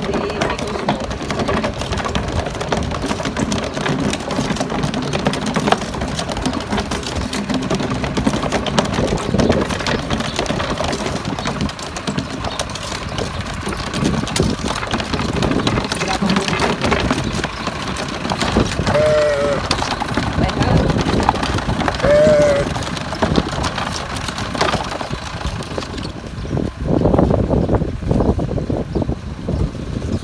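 A small wooden cart drawn by two rams rolling and rattling over cobblestones, with the rams' hooves and the walkers' footsteps; the rattle thins out near the end as the cart reaches a dirt road. Two short calls sound about two thirds of the way through.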